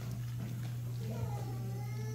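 Steady low electrical hum from the church sound system. A faint, high-pitched wavering cry begins after about a second.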